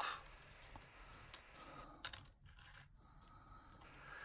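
Faint light clicks and taps of a hobby razor knife working between a die-cast toy car's wheel and its plastic-chrome wheel cap, prying the cap off, over quiet room tone.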